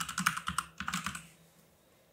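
Computer keyboard typing: a quick run of keystrokes entering a password that stops after about a second.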